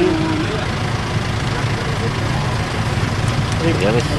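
A vehicle engine idling: a steady low rumble that does not change.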